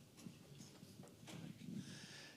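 Near silence: room tone with a few faint, soft knocks.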